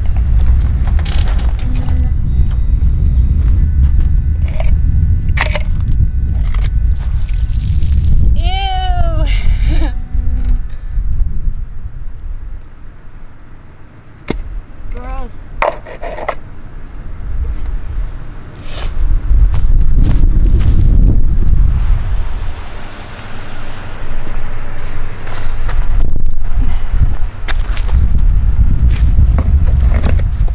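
Low rumble of a tow vehicle pulling a travel trailer forward off its plastic levelling blocks, easing off partway through and coming back loud near the end. There are scattered knocks, and a short called-out voice about nine seconds in.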